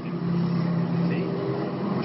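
Steady low hum of a vehicle engine in street traffic, with faint voices over it.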